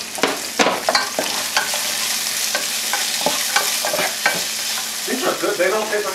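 Strips of carrot and red pepper sizzling as they stir-fry in a pot, with a wooden spoon scraping and knocking against the pot in quick, irregular clicks as they are stirred.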